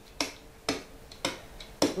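Marker pen writing on a board: four short sharp taps of the tip against the surface, about half a second apart.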